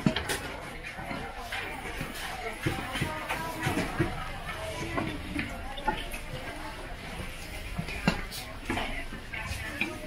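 Market ambience: indistinct voices of vendors and shoppers in the background, with scattered sharp knocks and clatter.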